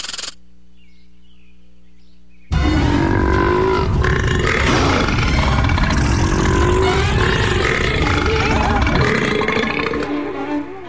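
Cartoon sound effect of a warthog's enormous, long burp, starting about two and a half seconds in after a quiet low hum and running for about seven seconds, with music beneath.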